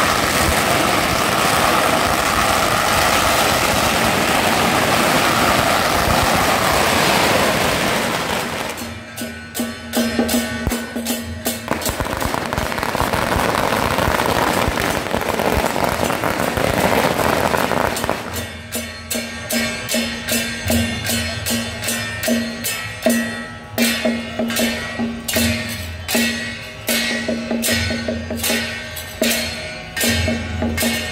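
Strings of firecrackers crackling in a dense, continuous burst, dropping away briefly, then crackling again. About two-thirds in the firecrackers stop and temple procession percussion takes over: drum and cymbal strokes beating a steady rhythm of roughly two to three strikes a second.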